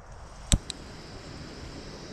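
A sharp hard click about half a second in, followed by a fainter second click, from camping gear being handled.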